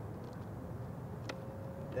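Steady low background rumble of a residential street, with one sharp click a little past a second in, followed by a faint steady tone.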